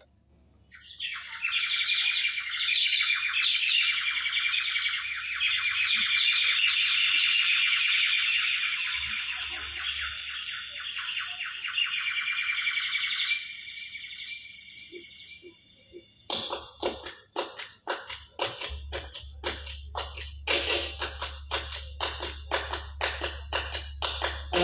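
Live band music between songs: a shrill, high-pitched melodic line for about twelve seconds, then a lull and a steady beat of sharp percussive strikes about twice a second that leads into the next song.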